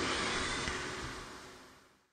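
Faint, even hiss of the room and microphone in a pause between spoken phrases, fading away to dead silence near the end.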